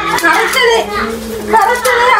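Children's voices talking, one after another, in a small room.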